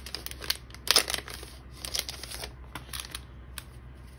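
Clear cellophane packet crinkling in short bursts as a stack of paper stickers is pulled out of it, with a few faint ticks in the second half.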